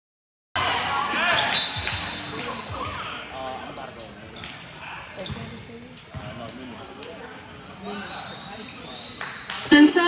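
Indoor volleyball play on a sport court: the ball struck and bouncing, sharp knocks, with players shouting short calls. The sound cuts in suddenly about half a second in.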